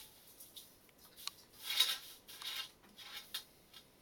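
Dry, crumbled forest moss rustling and crackling as hands fluff and spread it in a stainless steel bowl, in a run of short scratchy swishes, the loudest about two seconds in.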